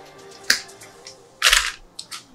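Rolled whiteboard sticker sheet being handled: a sharp crackle about half a second in, then a louder rustle of the sheet about a second and a half in. Faint background music plays underneath.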